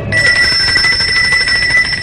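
Electric bell ringing with a fast continuous trill for about two seconds, then stopping: the bell that opens the court session.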